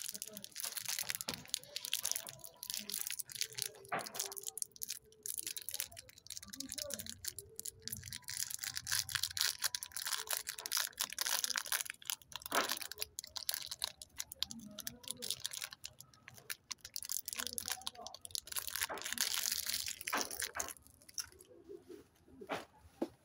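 Gold plastic wrapper of a Cadbury 5 Star chocolate bar crinkling and tearing as it is pulled open by hand, a dense crackle broken by sharper rips, loudest about twelve seconds in and again near the end.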